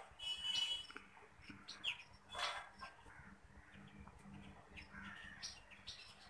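Faint birds chirping in the background: scattered short, high calls, one early on with a clear whistled tone and a few more spread through, over a faint steady low hum.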